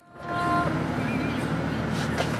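Steady engine and tyre noise of a moving vehicle, heard from inside its cabin, fading in over the first half-second, with a few faint steady tones early on.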